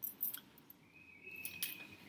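A few faint, short clicks and light handling noise, with a faint thin high steady tone in the second second.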